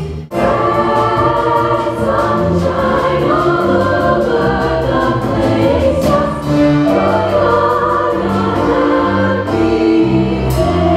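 High school choir singing a Broadway choral medley over sustained low accompanying notes. The music drops out for a moment right at the start, then comes back in full.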